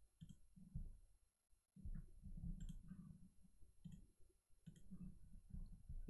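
Faint computer mouse clicks, about half a dozen spaced irregularly a second or so apart, over a low room rumble.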